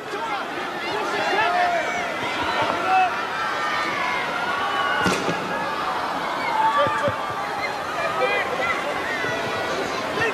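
Several voices calling out across a rugby field as a line-out is set, over steady ground noise, with one sharp knock about five seconds in.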